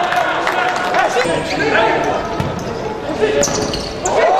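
Indoor futsal play in an echoing sports hall: ball kicks and shoe squeaks on the court floor, with players' voices calling.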